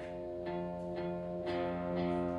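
Live experimental music: electric guitar notes plucked about twice a second, each ringing on, over a steady sustained drone, the last pluck near the end the loudest.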